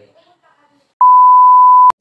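A single loud electronic beep, one steady pitch held for about a second, starting about a second in and cutting off sharply with a click.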